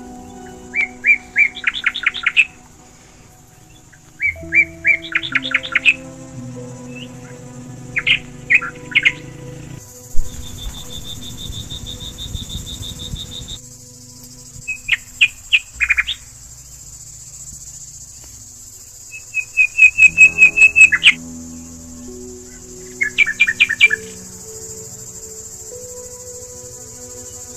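A songbird singing in short, loud phrases of rapid chirps, repeated every few seconds, over soft background music with long held low notes. Near the middle, a steady high trill runs for about three and a half seconds.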